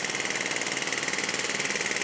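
Pneumatic jackhammer hammering steadily in rapid strokes, breaking up old paving.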